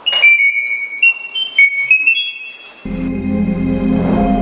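Chirp data-over-sound signal from a Google Home Mini's speaker: a quick run of short, high beeping tones hopping from pitch to pitch, carrying the "turn it off" command to the Arduino. A little under three seconds in it gives way to low, steady electronic music.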